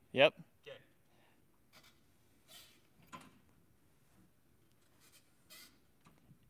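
A short spoken 'yep', then near silence broken by a few faint, brief rustling noises.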